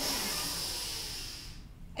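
A long, deep breath through the nose or mouth, an airy hiss that fades out over about a second and a half, taken while holding a prone back-bend yoga pose.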